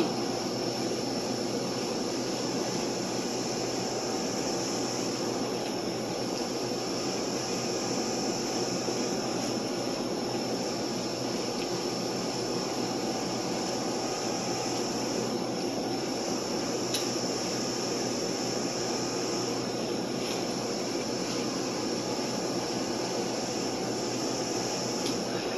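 Steady hum of air-conditioning equipment running, with a faint high whine held over it and a couple of faint ticks in the second half.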